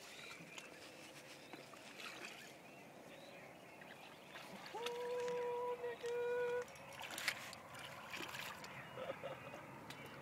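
Quiet waterside ambience with a few faint clicks. About halfway through, a steady hum-like tone sounds for about two seconds, with a short break in it.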